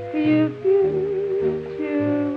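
Music from a 1937 swing-era jazz recording, with no sung words: a sustained melody line with vibrato over a bass line that steps to a new note about twice a second.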